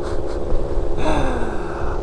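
Gilera Stalker 50cc two-stroke scooter engine running while riding, its pitch falling about a second in as the throttle is eased, with wind noise on the microphone.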